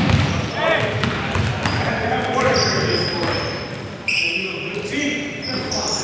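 Basketball game in a gym hall: sneakers squeaking on the hardwood court in short high squeals and the ball bouncing, with players' voices calling out in the echoing hall.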